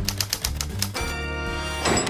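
Title-card jingle: quick typewriter key clacks, about ten a second, over a bass note, then a held musical chord that swells and cuts off near the end.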